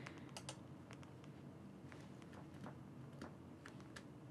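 Faint, scattered clicks from a computer mouse and keyboard, a few separate clicks over a quiet room tone.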